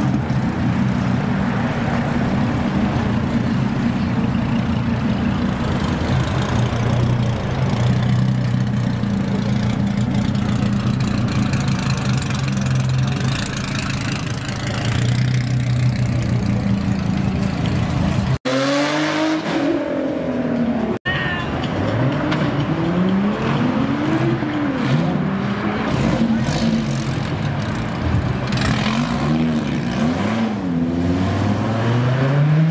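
Dodge Viper 8.4-litre V10 engines idling with a steady low rumble. After a break about eighteen seconds in, a Viper's engine revs up and down repeatedly in rising and falling sweeps as it pulls away.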